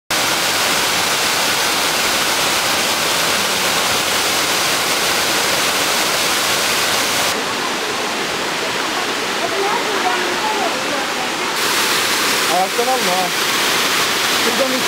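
Waterfall pouring steadily, a loud even rush of falling water. Faint voices of people can be heard over it in the second half.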